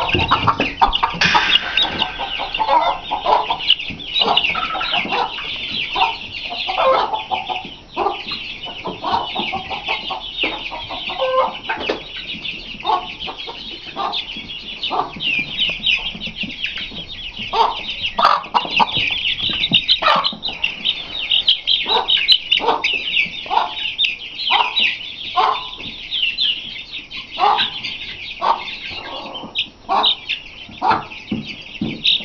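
A group of young, half-grown chickens peeping continuously: a dense stream of rapid, high, falling peeps. Lower, shorter clucking calls break in every second or so.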